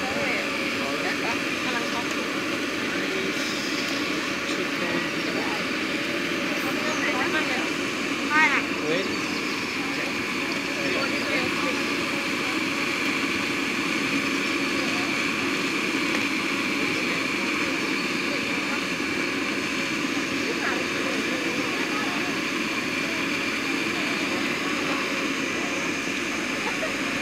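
Cotton candy machine's spinner head running with a steady whirring hum.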